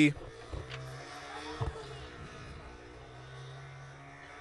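Field ambience at a football match: faint distant voices of players calling on the pitch, with a single dull thump about one and a half seconds in, over a low steady hum.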